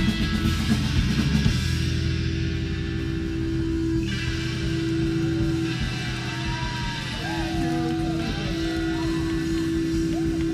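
A live rock band playing in a small club, with drums and guitar. A single held note drones through most of it, and wavering, sliding notes rise above it in the second half.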